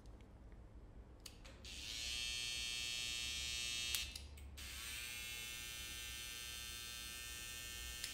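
Babyliss cordless hair trimmer, its cam follower newly replaced, switched on and running with a steady buzz for about two seconds, switched off, then run again from about halfway, a little quieter, to the end.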